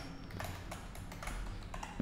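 Faint keystrokes on a computer keyboard, a few irregular clicks.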